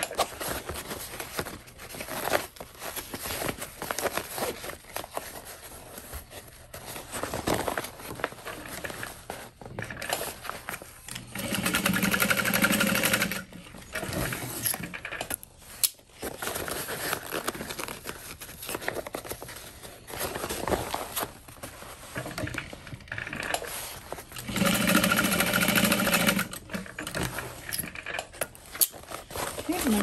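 Juki industrial single-needle lockstitch sewing machine running in two steady bursts of about two seconds each, roughly 12 and 25 seconds in, stitching a fabric pouch. Between the bursts there are irregular clicks and rustles of fabric being handled.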